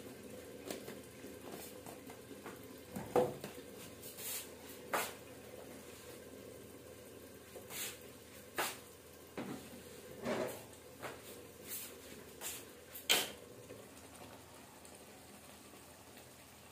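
Scattered knocks and clatters of kitchen things being handled, about a dozen short ones, the sharpest about three seconds in and near the end, over a faint steady background hiss.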